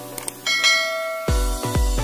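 A short click sound effect, then a bright bell chime ringing out for most of a second. About a second and a quarter in, electronic dance music starts with a deep bass beat about twice a second.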